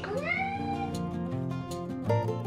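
A single short high call that rises at the start and holds for nearly a second, over background guitar music.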